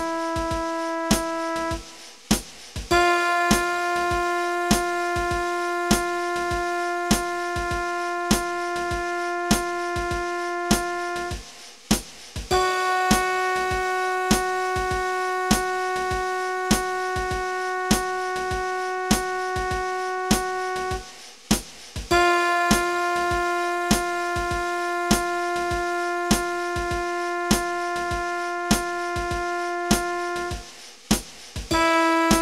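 A long-tone practice track: a steady synthesized instrument note is held for about eight seconds, then stops briefly, three times over, with the held notes moving between two neighbouring pitches. A metronome clicks steadily underneath, about 100 beats a minute.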